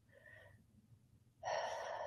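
Near silence, then about one and a half seconds in a woman takes a soft, audible breath in.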